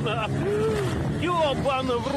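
Men's voices calling out over the steady running of an inflatable boat's outboard motor, with wind on the microphone.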